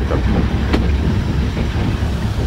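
Metre-gauge electric train running along the track, heard from inside the rear cab: a steady low rumble of wheels on rail, with one sharp click about three-quarters of a second in.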